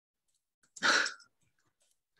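A single short, loud vocal burst about a second in, amid faint scattered clicks.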